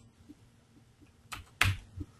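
Sharp taps on a computer keyboard, pressed on a keyboard that is stuck: two loud ones close together a little past a second in, and a lighter one near the end.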